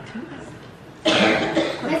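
A person coughing, sudden and loud about a second in, after a quiet stretch of room sound.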